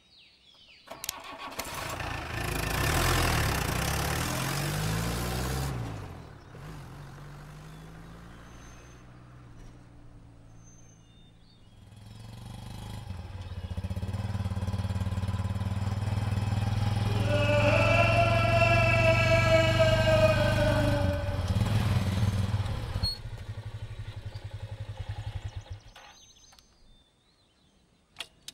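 An open jeep's engine starts about a second in and revs, then runs steadily as the jeep drives off, growing louder from about twelve seconds and fading out near the end. A high, slowly falling tone sounds over it for a few seconds in the middle.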